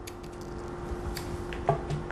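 Small scissors snipping the lace of a wig along its hairline: a few short quiet clicks over a steady low hum.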